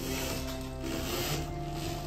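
Background music, with the rubbing noise of a roller blind's chain and roller as the blind is pulled up, easing off after about a second.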